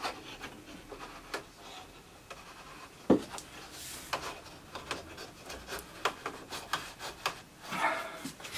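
Handling noises on a wooden pantograph router jig: light rubbing and small wooden clicks, with one sharper knock about three seconds in.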